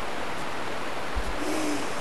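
Steady hiss of the recording's microphone noise in a quiet room, with a soft low bump a little past a second in and a brief faint hum of a voice soon after.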